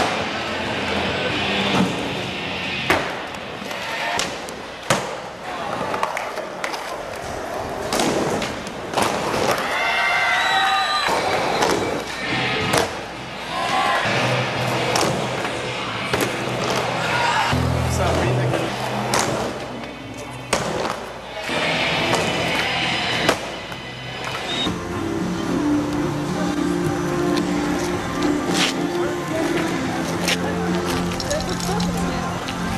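Music playing with skateboard sounds mixed in: wheels rolling and several sharp clacks of boards popping and landing, along with voices.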